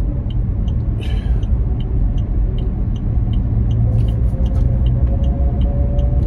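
Car cabin noise while driving: steady engine and road rumble, with a turn signal ticking about twice a second.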